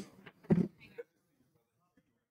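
A brief snatch of a person's voice about half a second in, then silence.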